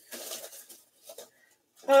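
A few faint, short handling noises, then quiet, then a man's voice exclaiming near the end.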